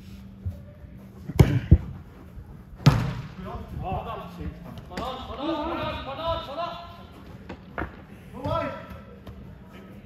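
A football being kicked on an indoor artificial-turf pitch: sharp thuds of ball strikes, two close together about a second and a half in and another near three seconds, with players' voices ringing out in a large hall.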